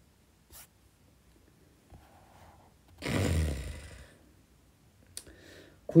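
A book page being turned: one rustle of paper and handling about three seconds in, lasting about a second and fading, with a couple of faint clicks before and after.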